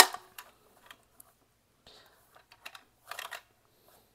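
Hard plastic pooper scooper being handled: one sharp plastic click at the start, then scattered light clicks and rattles, with a short run of clicking about three seconds in.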